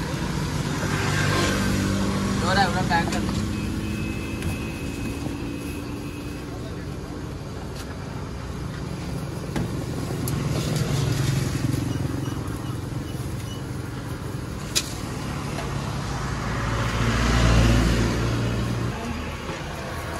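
Busy street ambience: vehicle engines run steadily under background voices, with one sharp click about fifteen seconds in and a vehicle growing louder near the end.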